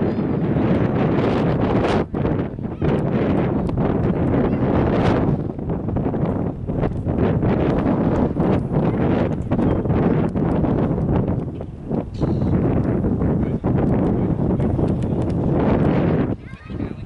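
Wind buffeting the camera microphone: a loud, rumbling noise that comes in gusts, easing off briefly a few times.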